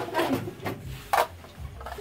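Several short knocks and clatters, the loudest a little past a second in, with a faint voice near the start.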